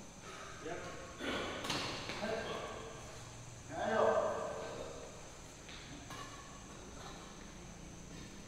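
People's voices calling out across a badminton court, loudest about four seconds in, with one sharp knock a little under two seconds in.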